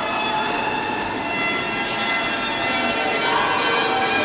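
A dense, steady drone of many held tones over a noisy wash, with no beat, swelling slightly near the end.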